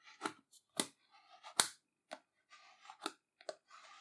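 Flexible plastic spatula swiped over a wet sticker on glass, squeezing out soapy water: faint short scrapes and clicks, about six of them, with soft swishes in between.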